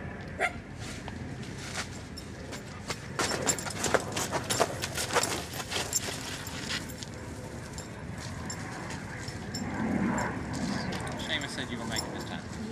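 A run of sharp crackles and rustles from dry leaves, moss and twigs in a small teepee of kindling as a campfire is being lit, thickest a few seconds in, then easing off.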